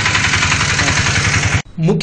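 Diesel lorry engine idling close by with a steady, even pulse, cut off abruptly near the end. A voice begins just before the end.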